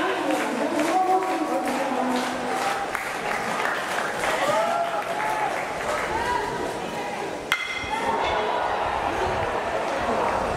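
Ballpark crowd voices and clapping throughout, and about seven and a half seconds in a single sharp metallic ping with a brief ring: an aluminium bat hitting the pitched ball.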